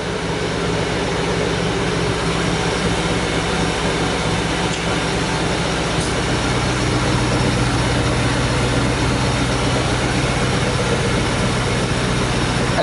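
A car engine idling steadily, a low even hum that grows deeper and stronger about six seconds in.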